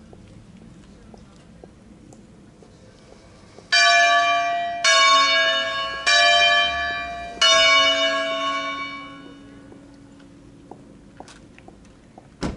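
A swinging church bell from a five-bell peal in A, rung for a funeral: its clapper strikes four times about a second and a quarter apart, and then the bell rings out and fades away.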